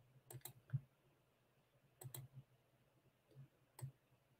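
Faint clicking at a computer, mostly in quick pairs, three times, against near silence.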